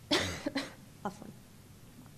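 A woman coughing into a tissue: one strong cough at the start, then two smaller coughs over the next second.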